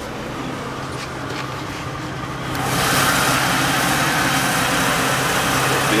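Volvo Penta 4.3 GXi fuel-injected V6 inboard engine idling steadily. About two and a half seconds in, it becomes louder and brighter as the engine hatch is opened.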